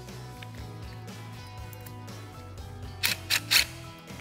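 Cordless power driver with a socket extension running in three short bursts about three seconds in, tightening the hose clamp on a billet crankcase breather, over background music.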